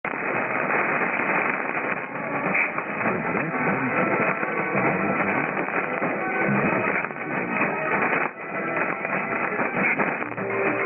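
A weak 1233 kHz mediumwave broadcast of Monte Carlo Doualiya heard through a shortwave receiver in single sideband, narrow-bandwidth mode: music with guitar comes through faintly under heavy static, with a faint steady whistle. The signal briefly fades about eight seconds in.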